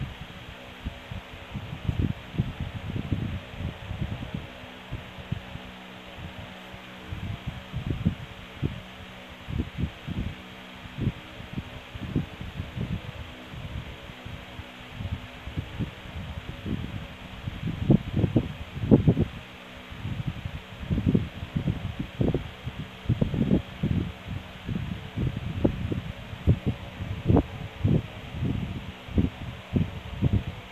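Cabin noise inside a passenger e-jeep: a steady hiss with frequent irregular low thumps and rumbles, busier in the second half.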